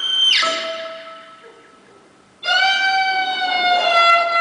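Live fiddle tune: the band's playing slides down in pitch and leaves one held note that fades almost to a pause. About two and a half seconds in, the fiddle comes back in abruptly with a long, loud bowed note.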